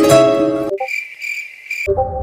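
Short plucked-string music phrase that stops about two-thirds of a second in, followed by a cricket-chirping sound effect that cuts off just before the end, when another musical sound begins.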